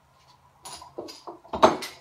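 Stainless steel parts clinking and clanking as they are handled, a few light clinks followed by a louder metallic clatter near the end.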